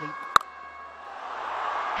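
Cricket bat striking the ball once, a sharp crack about a third of a second in, on a big hit that goes for six. Stadium crowd noise swells over the last second.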